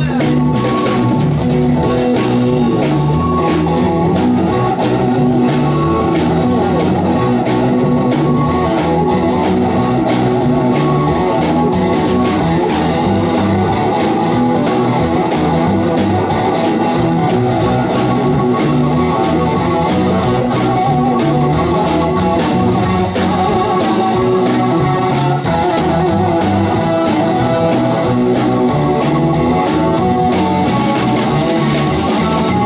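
Live blues-rock band playing an instrumental passage with no vocals: electric guitar to the fore over drum kit, bass guitar and keyboard.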